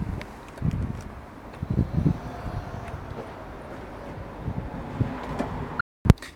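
Camera handling noise: a few dull low thumps and rustles over a steady background hiss as the handheld camera is moved, with a brief dropout near the end.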